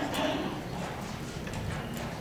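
Metal thurible swung on its chains to incense the Gospel book, the chains and censer clinking lightly with each swing.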